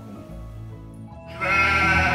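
Background music with held notes; about a second and a half in, a loud goat bleat comes in as a comic sound effect over it.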